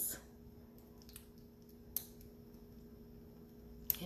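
Faint small clicks of metal watch parts being handled as a watch band is fitted to a watch face, with a sharper click near the end as the band's little latch pops off. A faint steady hum underneath.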